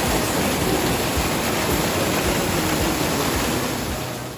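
Strong flow of muddy water gushing and rushing over rocks: a loud, steady rush of water.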